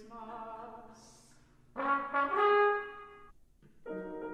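Contemporary chamber ensemble of winds and brass playing held notes. Soft sustained tones give way, about halfway through, to a loud chord that is held for about a second and a half and then cut off. After a short gap a new chord enters near the end.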